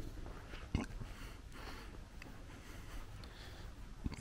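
Faint footsteps of a person walking, with one sharper knock just under a second in.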